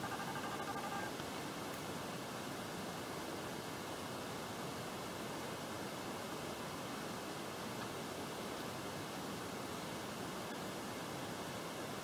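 Steady hiss of background noise with no distinct events. A few faint high tones fade out about a second in.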